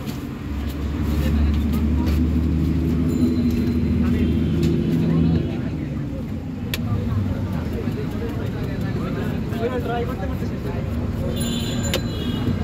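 Street traffic noise: a motor vehicle's engine runs close by as a steady low drone for about the first half, then drops away to a lower traffic background with a few light clicks.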